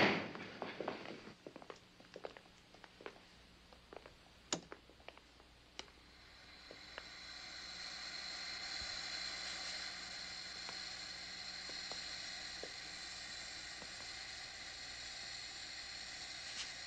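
Cabinet doors clicking and knocking shut, then about six seconds in a steady hiss with a faint hum swells up and holds: the cryogenic freezers running.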